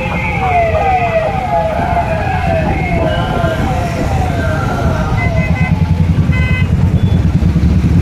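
A police vehicle siren sounds a rapid series of falling tones, about two a second, that dies away about six seconds in. Under it, the motorcycles of the rally run with a steady low engine rumble that grows louder toward the end.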